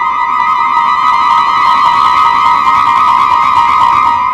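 Live contemporary chamber music: one high note is held with a slight vibrato, with quieter accompaniment beneath.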